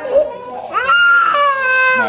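A young child crying: a short cry at the start, then one long high wail from a little under a second in.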